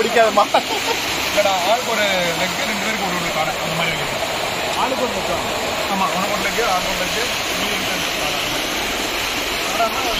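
Stream water rushing over rocks as a steady hiss, with people talking over it.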